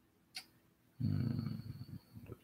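A short click, then about a second in a man's low closed-mouth vocal sound, a hum or murmur with no words.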